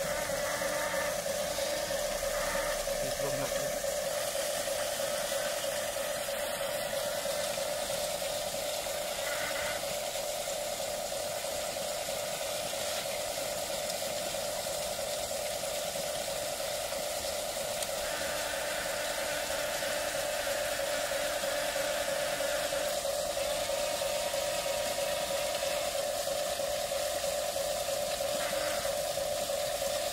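A small electric motor running with a steady, even hum, with a faint hiss over it.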